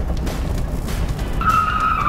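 A 1969 Alfa Romeo GTV 1750 running, under background music. About one and a half seconds in, a tyre squeals for about a second as the car turns.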